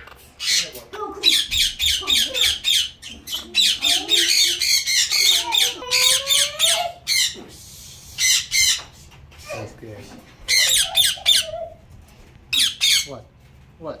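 Parrots squawking: quick series of loud, harsh calls, coming in runs with short gaps between them.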